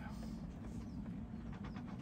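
Faint, scattered clicks and light scraping of a plastic MC4 solar connector being handled, with thin pin-removal tools pushed into its back end to free the crimped pin.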